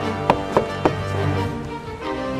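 Background music playing, with three quick knocks on a wooden door in the first second.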